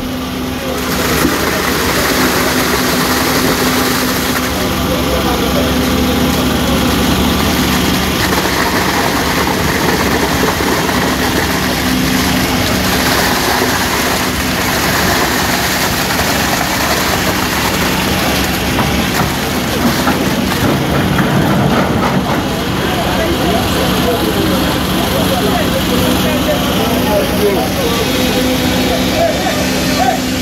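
Heavy diesel construction machinery, a tracked excavator and a concrete mixer truck, running steadily with a constant engine drone, under the chatter of a crowd of many people talking at once.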